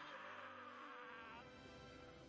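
Faint music with one steady held tone, the upper part fading out about two-thirds of the way through.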